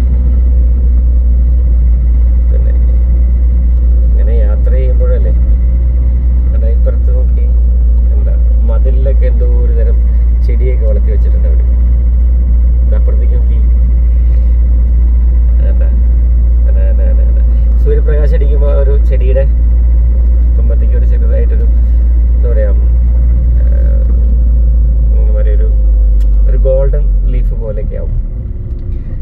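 Steady low rumble of a moving vehicle driving along a road, with indistinct voices over it. The rumble eases near the end.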